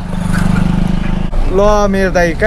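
A voice vocalising drawn-out "eh" sounds that rise and fall in pitch, inside a moving car over its engine and road noise.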